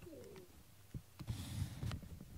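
A cat's short call gliding downward in pitch, a chirp-like trill, near the start. About a second in, louder rustling and knocking of the camera being moved and handled.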